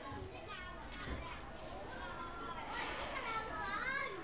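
Children's voices at play in the background, several faint voices overlapping and calling, with no clear words.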